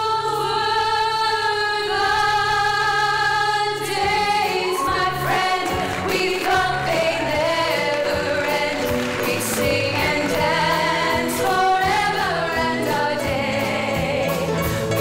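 Female voices singing together in harmony with a live pop band. They hold one long chord at first; about four seconds in, the drums and cymbals come in and the singing moves on over the band.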